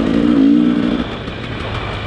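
Dirt bike engine running on a trail, with a steady engine note that eases off about a second in as the throttle comes back.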